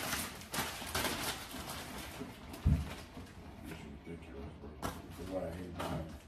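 Grocery-unpacking noises at a kitchen counter: plastic bags rustling and items knocking and clicking as they are handled, with one dull thump a little before the middle. Voices murmur in the background, briefly near the end.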